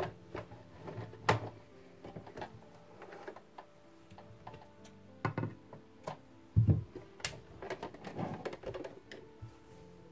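Scattered clicks and knocks of hands working at a domestic sewing machine that is not running, with cotton sheet fabric being moved and rustled, over faint background music. The loudest knocks come about a second in and between five and seven seconds in.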